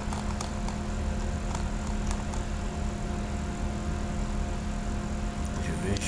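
Steady electrical hum and hiss with a few scattered mouse clicks as points of a line are placed.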